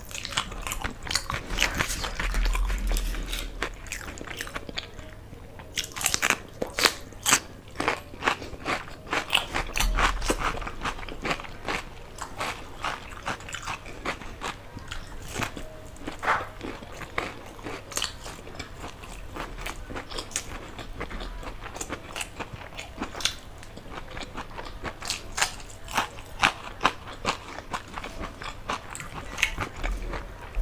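Close-miked chewing and mouth sounds of a person eating spicy khichdi by hand, a dense, irregular run of sharp wet clicks and smacks. The clicks come thickest about six to eleven seconds in and again near the end.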